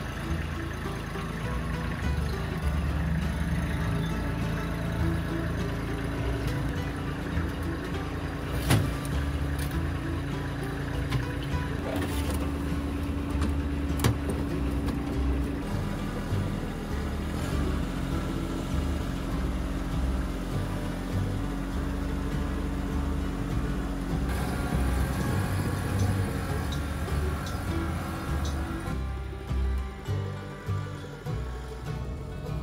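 Kubota compact tractor's diesel engine running steadily as the tractor drives with its front loader raised, with two sharp knocks about nine and fourteen seconds in.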